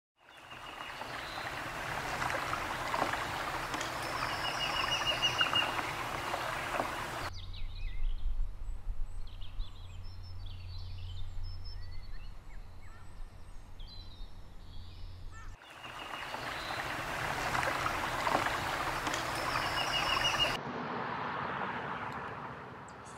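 Outdoor ambience with wild birds chirping and giving short, rapid high trills over a steady hiss. The background changes abruptly at about 7 s and again at about 16 s, and turns quieter near the end.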